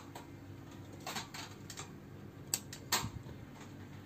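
A few sharp clicks and knocks spread over a few seconds, one of them the room's light switch being flipped off, over a faint steady hum.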